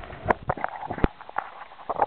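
An irregular run of sharp knocks and clicks, about eight or nine in two seconds, the loudest about a second in.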